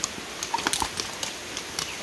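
Several horses' hooves clip-clopping unevenly on a wet gravel trail at a walk, a scatter of sharp clicks.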